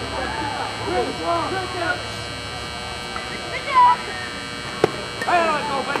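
Spectators talking and calling out at a youth baseball game, over a low hum that fades about two seconds in. A single sharp knock comes a little before five seconds in.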